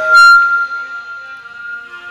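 A break in a live devotional song's singing: after a short loud accent just at the start, the accompaniment holds a single high, reedy instrumental note that slowly fades.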